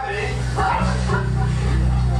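Amplified guitars and bass held on low sustained notes, with a new low note coming in about a second in, under people talking in the room.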